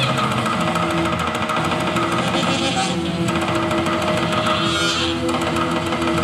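A live band playing, with guitar to the fore and long held notes throughout.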